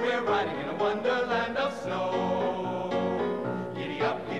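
A men's chorus singing in harmony, several voices holding and moving between notes together.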